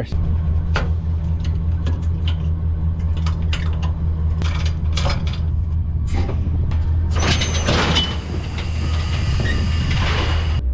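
An engine running steadily while the hydraulic controls of a cattle hoof-trimming chute are worked by hand, with scattered metallic clicks from the levers and fittings. About seven seconds in, a loud rushing hiss lasts for about a second and a half.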